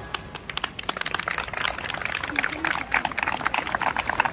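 Scattered hand-clapping from a small group of onlookers, many quick irregular claps, with people talking.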